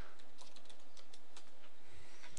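Computer keyboard typing: a run of separate keystrokes as a short word and number are entered.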